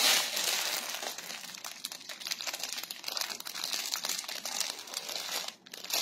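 Clear plastic garment packaging crinkling as it is handled and opened: a dense run of small crackles, with a brief pause near the end.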